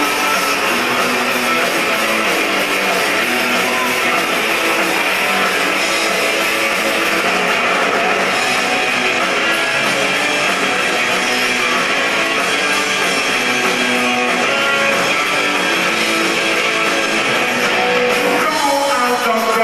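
Rock band playing live, loud and steady: electric guitars over bass and drums in an instrumental passage with no singing.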